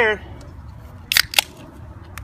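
Beer can being cracked open: two sharp clicks about a quarter of a second apart.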